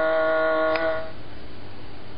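Circuit-bent electronic keyboard holding one pitched tone rich in overtones, which cuts off about a second in just after a click, leaving a steady hiss.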